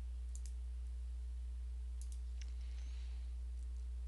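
Computer mouse clicks: a quick pair about half a second in, then another quick pair and a single click about two seconds in, over a steady low electrical hum.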